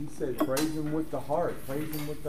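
A man's voice talking, with a few sharp clicks about half a second in and again near the end.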